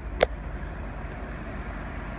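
Steady low rumble of outdoor background noise, with one sharp click about a quarter second in.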